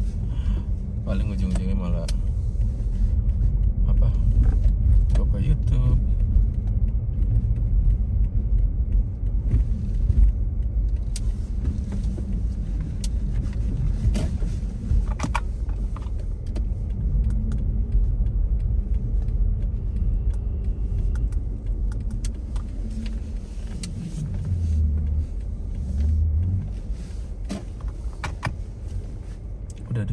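Inside a moving car: a steady low rumble of engine and tyres on a snow-covered road, with occasional small clicks and knocks from the cabin.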